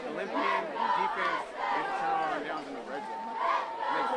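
Crowd of football spectators shouting and yelling, many voices overlapping.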